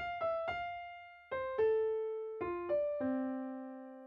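Piano playing a slow single-note melody line in F: F, E, F, then C, A, F, D and a low C, about eight notes, each struck and left to ring and fade.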